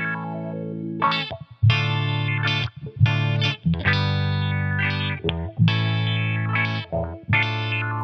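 Electric guitar played through a Subdecay Prometheus 3 dual filter pedal, its low-pass envelope filter set to the stepped envelope for sixteenth notes. Notes and chords are struck about once a second and ring on between strikes, their tone changing in steps as the filter moves.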